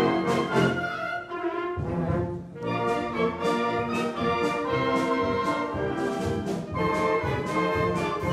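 Wind band playing: sustained brass chords over regular drum and cymbal strikes. The texture thins briefly about two seconds in, then the full band comes back in.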